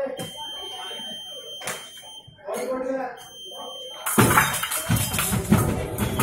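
Electric epee scoring box giving a steady high beep, once for about two seconds near the start and again briefly around the three-second mark, between short calls from voices. About four seconds in, a loud burst of noise with many thuds as the fencers rush at each other on the piste, and the box beeps again at the end as the touch is scored.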